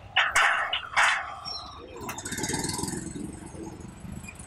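Two short, loud sharp sounds about a second apart near the start. Then a small motorcycle engine runs past at low speed and fades.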